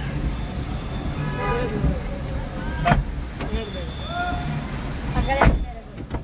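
Car idling in street traffic, a steady low rumble under people's voices, with a few sharp knocks, the loudest just before the end.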